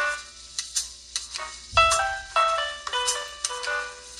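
Recorded piano music played through a rebuilt Pioneer CS410 speaker with a GRS 10PR-8 woofer and a budget GRS 1TD2-8 dome tweeter: a melody of single struck notes that ring out, a few to the second.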